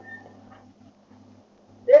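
A pause in a man's speech, filled only by a steady low hum, with one brief faint high tone near the start; his voice comes back just before the end.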